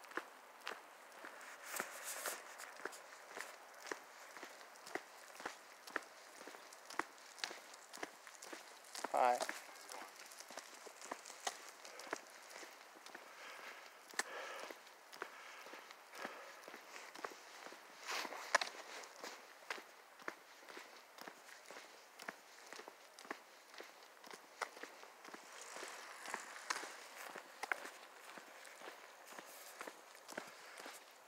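A person's footsteps on a paved trail, faint and steady at a walking pace of about two steps a second, with one brief wavering pitched sound about nine seconds in.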